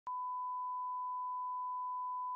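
A steady 1 kHz sine-wave reference tone, the line-up tone that goes with SMPTE colour bars. It holds one pitch without a break and starts with a brief click at the very beginning.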